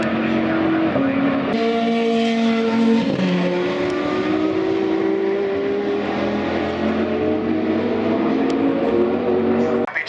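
High-performance supercar engines running hard on a race circuit: a loud, sustained engine note that rises and falls slowly in pitch, changing abruptly about a second and a half in and again at three seconds.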